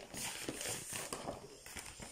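Irregular rustling and soft clicks of a cross-stitch kit's packaging being pulled out and handled.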